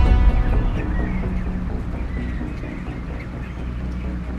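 Broiler chicks cheeping faintly in a poultry house over a steady low hum, as a music bed fades out at the start.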